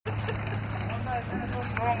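A steady low machine hum runs throughout, with people talking over it from about a second in.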